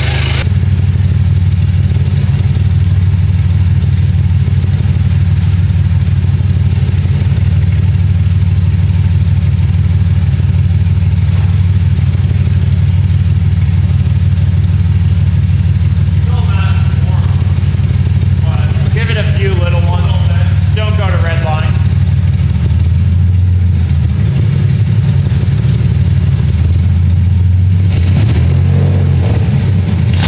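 BMW E46 330Ci's M54 3.0-litre straight-six running very loud and steady through bare headers with no mid pipes, just after its first start. Its note dips lower for a few seconds about two-thirds through, and voices call out faintly over it shortly before.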